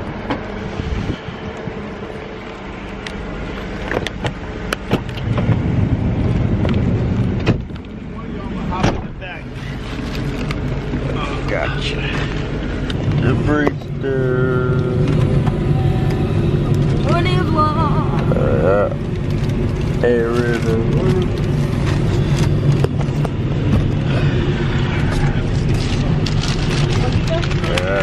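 Steady low rumble of a minivan's cabin while the vehicle runs, setting in about five seconds in, with a few sharp knocks before it.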